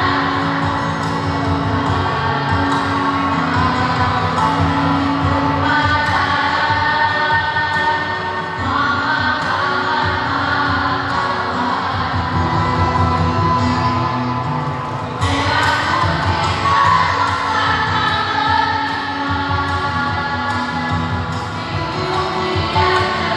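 A vocal group, mostly women's voices, singing together in several parts with long held notes.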